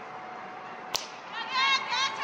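A cricket bat strikes the ball once, a single sharp crack about a second in. Half a second later come two loud, high-pitched shouts.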